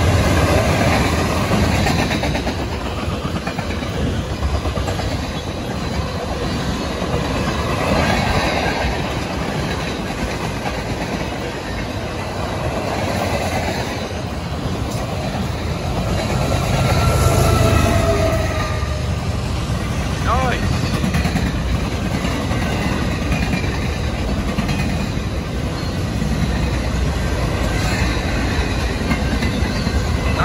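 Freight train of mixed cars rolling past: steady wheel-on-rail rumble and clatter with clickety-clack over the rail joints. About halfway through, a mid-train diesel locomotive goes by, bringing a louder swell of engine rumble and a few steady tones.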